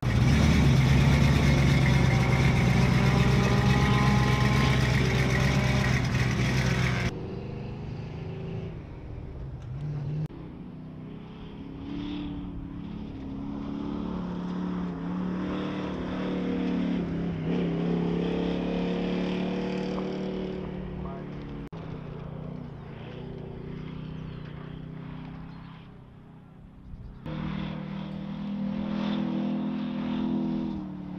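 Hobby stock dirt-track race car's engine, loud and close as the car pulls away, then heard from further off lapping the oval on hot laps, its pitch rising and falling as it accelerates and lifts.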